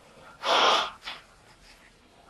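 A man's audible in-breath through the mouth: one short noisy inhale lasting about half a second.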